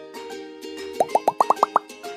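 Light background music, with a quick run of about seven short rising 'bloop' sound effects about a second in, each pitched higher than the last.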